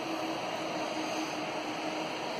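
Cooling fans under the modules of a Motorola Dimetra Express MTS2 TETRA base station running, a steady noise that sounds like running a hairdryer, with a faint steady hum.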